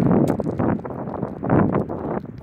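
Wind buffeting a phone's microphone in uneven gusts, a low rumbling that swells at the start and again about one and a half seconds in.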